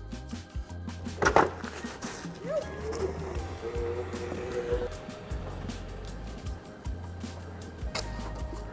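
Onewheel electric board rolling over rock and dirt trail, with a sharp knock about a second and a half in, under quiet background music.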